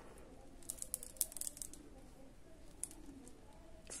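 Faint scattered clicks of plastic faceted beads knocking together as the beadwork is handled and the thread is drawn through: a small cluster about a second in and a few more ticks near three seconds.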